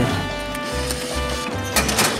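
Background music with a steady low beat and held tones.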